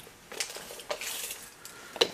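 Light handling noises as a tape measure is pulled out and set against the cast tool: two small clicks, then a brief rustle about a second in.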